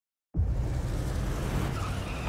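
A car engine rumbling low with tyre noise on wet pavement as the car rolls in, starting suddenly about a third of a second in.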